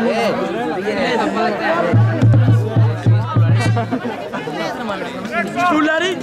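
Several voices shouting and talking over one another across a football pitch, with music playing underneath. Its low bass notes pulse between about two and four seconds in.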